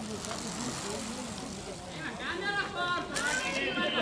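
Spectators' voices calling out, raised and high-pitched, in the second half, over a steady outdoor background noise that fills the first second.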